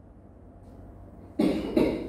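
A person coughs twice in quick succession about a second and a half in, after a quiet pause.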